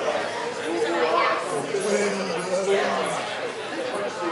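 Indistinct voices chattering in a large hall, with no clear words.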